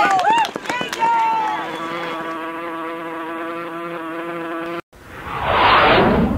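Voices in the crowd, then a steady, buzzy held tone for about three seconds. It cuts off abruptly and a loud, explosion-like sound effect swells up in its place.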